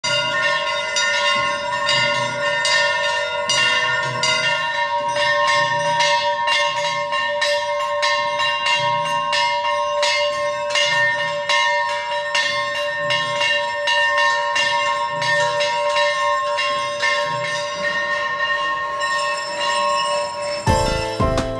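Large brass temple bells rung repeatedly by hand, their clappers striking a couple of times a second, so the ringing tones overlap and sustain without break.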